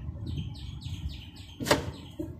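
A small bird gives a quick run of about seven short, falling chirps. Near the end comes a single sharp, loud metallic clack as the side panel of a desktop computer case is worked loose.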